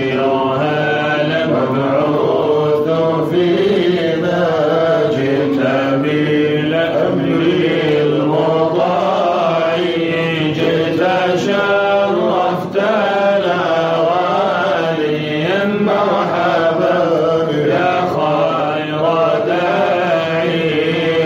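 Male voices chanting Sufi devotional verses (inshad) in Arabic: a continuous melismatic chant that winds up and down over a steadily held low note, without pause.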